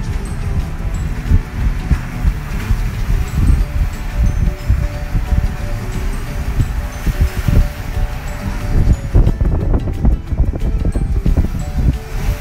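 Wind buffeting the microphone of a phone held out of a moving car's window, in loud, uneven low gusts, over background music.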